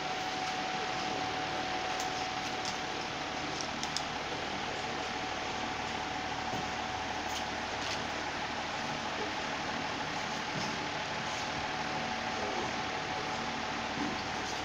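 A steady mechanical hum with a constant thin whine running through it, like a running fan or air-conditioning unit, with a few faint clicks scattered through.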